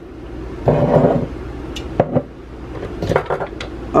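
Kitchen clatter at a rice-cooker pot: a short rush of noise about a second in, then several sharp clinks and knocks against the pot as home-canned veggie stock is added.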